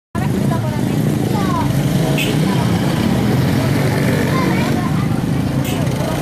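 Busy street-market crowd: many people talking at once over motor scooter engines running close by, with two brief sharp sounds about two seconds and five and a half seconds in.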